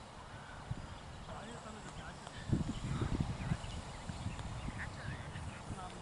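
Faint, distant voices of players calling and chatting across an open field. About two and a half seconds in comes a burst of low rumbling thuds lasting about a second, the loudest sound here.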